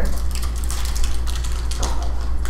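Steady low electrical hum on the lecture recording, with a few short scratchy, rustling noises over it.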